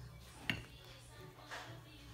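Quiet handling of shrimp being tossed in flour on a ceramic plate, with one sharp tap on the plate about halfway in and a fainter one near the end, over a low steady hum.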